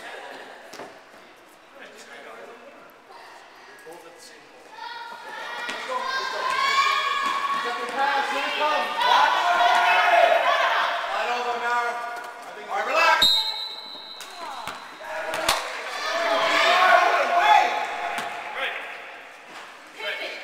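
Basketball game play in a large echoing gym: a ball bouncing on the court and overlapping, unclear shouts of players and spectators. About 13 seconds in comes a sharp bang with a short ring, and another sharp knock a couple of seconds later.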